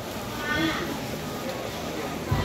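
Background chatter of a market crowd, with one short high-pitched voice call about half a second in.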